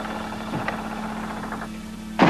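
A steady low hum holding one pitch, with a few faint ticks.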